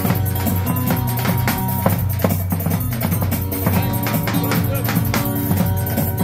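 Live Turkish dance music: an electronic keyboard plays a melody over a steady beat, with hand-beaten strokes of a davul bass drum.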